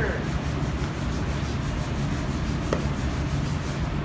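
Body filler (Bondo) being spread and scraped onto a car body panel with a spreader, a steady scratchy rubbing.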